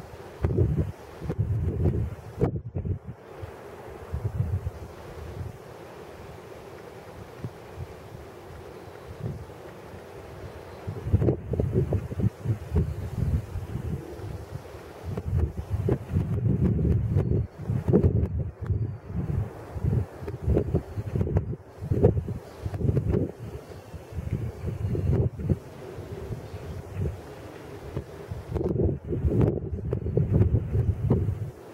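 Wind buffeting a compact camera's built-in microphone in irregular low gusts. It settles to a low steady rush for several seconds a few seconds in, then gusts hard again for the rest of the time.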